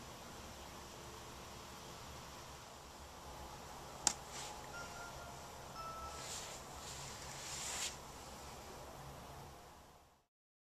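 Quiet workshop room tone with a low hum, a single sharp click about four seconds in, and then a few short rustling scrapes between about six and eight seconds as a hand brushes clay crumbs across the wheel head.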